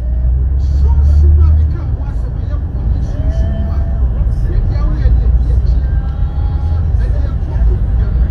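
Steady low rumble of a moving car heard from inside the cabin, with faint voices in the background.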